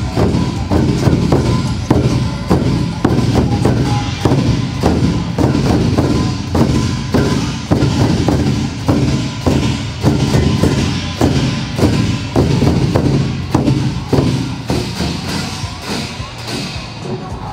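Large Chinese barrel drums beaten with wooden sticks by a drum troupe, a loud, steady rhythm of about two to three strikes a second.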